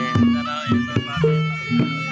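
Javanese jaranan gamelan playing live: kendang hand-drum strokes and ringing strikes on tuned gongs keep a steady pulse under a reedy wind instrument holding a high melody line.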